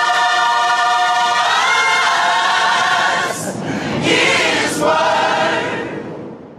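Gospel choir singing in harmony: one long held chord, then two shorter sung phrases with breaths between them, as the song closes.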